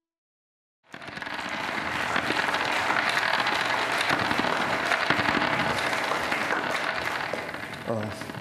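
Audience applauding, starting abruptly about a second in and holding steady before tapering off near the end.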